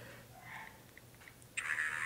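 Quiet room with a few faint clicks from taps on an iPod touch's passcode keypad, then a soft breath-like hiss in the last half-second.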